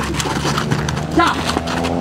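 Quick footsteps and ball kicks of players running and dribbling a football on a hard dirt court, a rapid run of taps and knocks, with a man shouting 'Ya!' about a second in.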